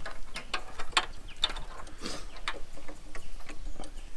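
Plastic automotive wiring connectors and a headlight globe being handled and plugged in by hand: a string of irregular light clicks and small rattles, with a brief rustle near the middle.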